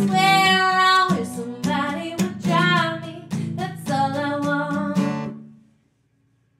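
A woman singing over a strummed acoustic guitar, the closing phrase of a song, the sound dying away to silence near the end.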